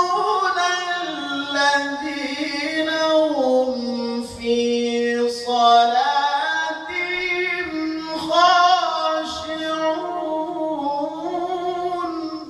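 A male qari's voice in melodic Qur'an recitation (tilawah) into a hand microphone, sung in long held, ornamented notes. The pitch steps down over the first half and climbs back up in the second, with short breaths between phrases.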